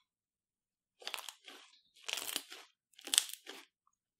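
Fluffy slime crackling and popping as fingers press and squeeze into it. It comes in three short bursts about a second apart, after a silent first second.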